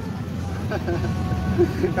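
Steady low hum of a vehicle engine running, with quiet talk over it.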